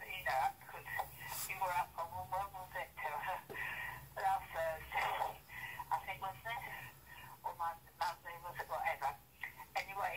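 An older woman's voice speaking in a recorded answerphone message, played back through a mobile phone's small speaker.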